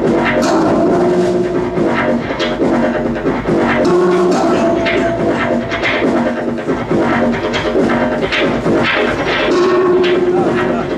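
Live industrial electro-punk music: a keyboard synthesizer holds steady, sustained tones over an acoustic drum kit, with frequent drum and cymbal hits throughout.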